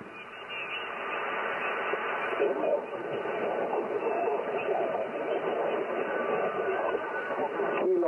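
Yaesu FTDX10 HF transceiver receiving on single sideband: its speaker gives out steady band static, cut off sharply above the voice passband, as it waits for a reply to a call. The hiss swells up over the first second, then holds.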